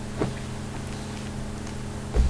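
Steady low background hum with a buzzy edge, holding one unchanging pitch with a faint click about a quarter second in.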